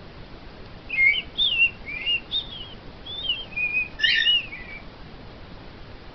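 Cockatiel whistling a warbling phrase of quick, gliding notes, starting about a second in and stopping shortly before the end.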